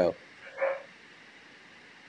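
Low, steady hiss of a live-stream microphone line, with the last of a spoken word at the very start and a faint short sound about half a second in.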